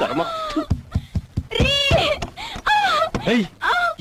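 Raised, distressed voices in dramatic dialogue, with a high-pitched cry about two seconds in.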